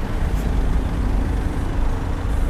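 Mercedes-Benz W211 E220 CDI four-cylinder diesel engine idling with a steady low rumble.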